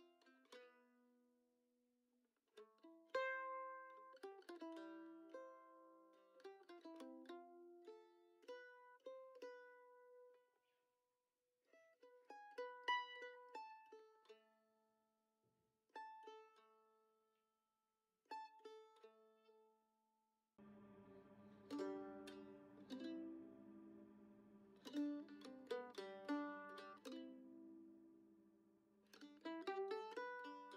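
Quiet background music: single plucked string notes in short phrases with pauses between them. About twenty seconds in, a sustained low note comes in under the plucking.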